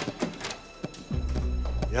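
A sharp click and a few light knocks, then background score music comes in about a second in with a low steady drone.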